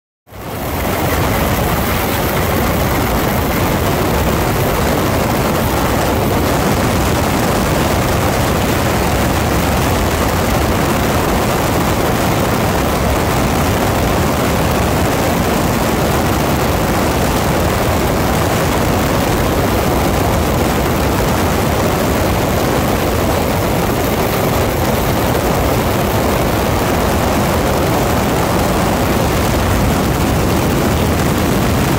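Open-cockpit cabin noise of a 1940 Waco UPF-7 biplane in level flight: a steady rush of slipstream wind over the microphone blended with the drone of its Continental W-670 seven-cylinder radial engine. The noise fades in quickly just after the start and then holds constant.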